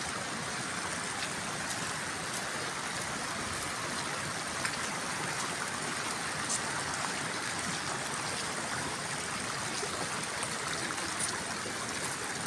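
Steady rush of running water, even and unbroken, with a few faint ticks scattered through it.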